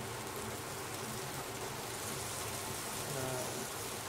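Rack of lamb searing in clarified butter in a very hot pan: a steady sizzle throughout.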